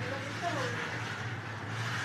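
A steady low hum, with a brief faint stretch of voice about half a second in.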